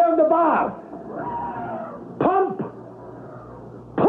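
Radio-drama voices: a spoken line trails off about half a second in, a faint distant call follows, and a short shouted call comes about two seconds in, over a low steady hum.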